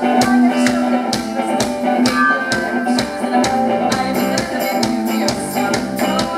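Celtic rock band playing live with no singing: a fiddle melody over electric guitar, bass and a steady drum beat.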